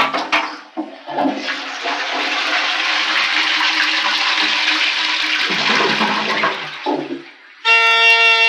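Toilet flushing: a long rush of water that builds about a second in and runs for some six seconds before fading. Just before the end a loud, steady horn-like tone sets in.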